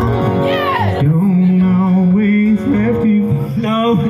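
A man singing live to acoustic guitars, holding one long note through the middle.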